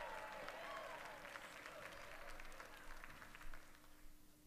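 Faint audience applause, dying away toward the end.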